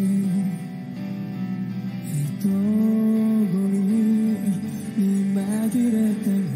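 A male singer performing a slow ballad live, holding long sung notes over an instrumental accompaniment that includes guitar.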